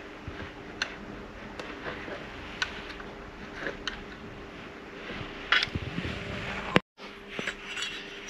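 Light, scattered metal clicks and clinks of a feeler gauge blade worked against the rocker arms and valve stems of a Mercury 3.5 hp four-stroke outboard during a valve-clearance check, over a steady low hum. A sharper click comes near the end, and then the sound cuts out for a moment.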